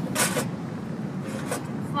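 Portable butane stove burner running steadily under a pot of simmering braised fish. There is a brief rustle near the start and a light click about one and a half seconds in.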